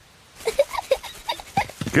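Cartoon pig character snorting: a run of short, irregular snorts starting about half a second in and growing louder near the end.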